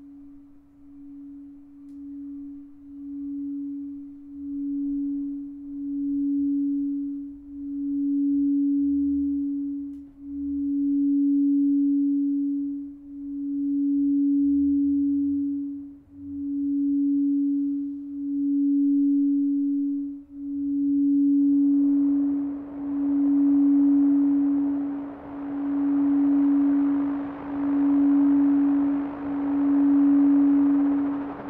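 A quartz crystal singing bowl rubbed around its rim with a mallet, sounding one pure, steady tone that pulses in slow swells about every two seconds and builds in loudness over the first several seconds. About two-thirds of the way in, a rising hiss of noise from a modular synthesizer joins it.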